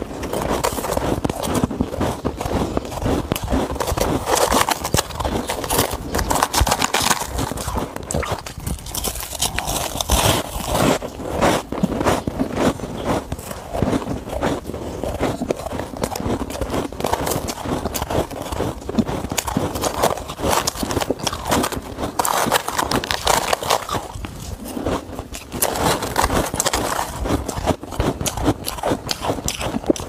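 Close-miked chewing of powdery freezer frost: dense, continuous crunching and crackling.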